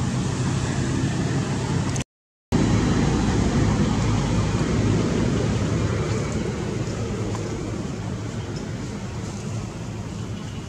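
Steady low rumbling background noise that cuts out completely for about half a second two seconds in, then comes back and slowly fades over the last few seconds.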